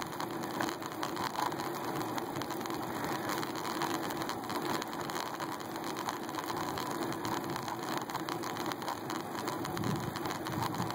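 Road noise from a moving bicycle, picked up by a phone clamped to the handlebars: tyres rolling on asphalt with a steady, fine rattle and vibration through the bars.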